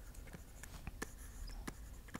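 Faint handwriting sounds of a stylus on a tablet screen: a string of small, irregular taps and light scratches as the words are written out.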